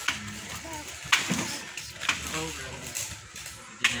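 A long-handled digging tool striking into wet soil in a series of sharp blows, about one a second, four in all.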